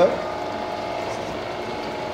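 7.5 kW induction motor driving a custom permanent-magnet alternator, running steadily at about 600 rpm under a 4.5 kW resistive heater load: an even mechanical hum with a few steady tones.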